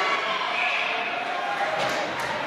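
Spectators' voices shouting and cheering in an ice rink during a scramble at the net, with a sharp knock of stick or puck near the end.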